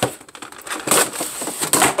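Action figure box being handled and pried open: clear plastic blister and cardboard packaging crackling and crunching, with two louder bursts, one about a second in and one near the end.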